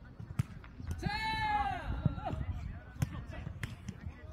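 Jokgu ball being played, with a few sharp thuds spread through the rally. A player gives one loud, drawn-out shout about a second in.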